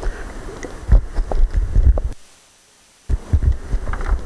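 Handling noise on a handheld microphone: irregular low thumps and rumble with a few faint clicks. The sound cuts out for about a second just past the middle, then the thumps return.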